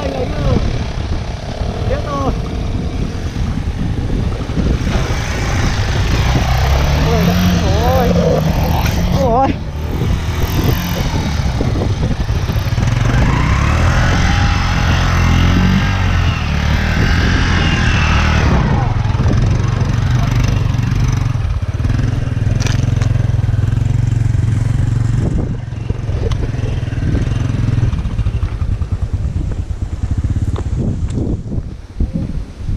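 Motorcycle engines running, one revving up and back down several seconds in, with people talking over them.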